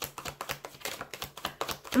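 A deck of tarot cards being shuffled by hand: a rapid, uneven run of light card clicks.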